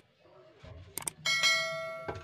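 Subscribe-button animation sound effect: two quick mouse clicks about a second in, then a bell chime that rings on and slowly fades.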